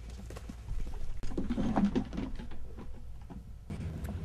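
Cheetahs running in along the fence, a quick irregular patter of footfalls on the ground. A brief faint voice-like call comes about one and a half seconds in.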